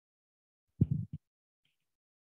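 Quiet room broken about a second in by one brief, low, muffled sound close to the microphone, lasting under half a second, followed by a faint tick.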